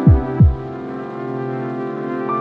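Electronic outro music: sustained synth chords with two deep, quickly falling bass hits in the first half second.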